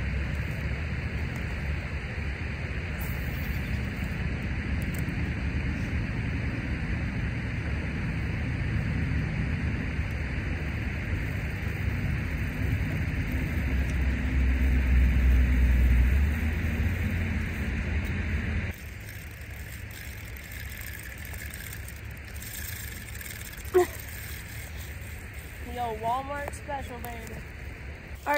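Steady rush of a river's rapids, with a low rumble that swells for a couple of seconds in the middle. About two-thirds of the way through it drops suddenly to a quieter, softer flow.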